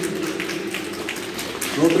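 Scattered applause from a small audience, a sparse patter of hand claps between spoken introductions of the performers.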